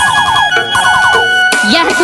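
Siren-like DJ sound effect in a Rajasthani folk remix: two runs of quick, repeated rising chirps over a held high tone, then a wavering pitched sound starts near the end.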